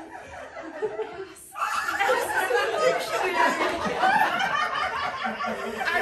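Audience laughing and chuckling along with speech from the stage; the laughter swells suddenly about a second and a half in and stays loud.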